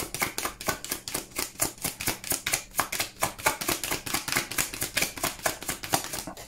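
A deck of tarot cards being shuffled by hand: a rapid, even run of card-on-card clicks, about six or seven a second.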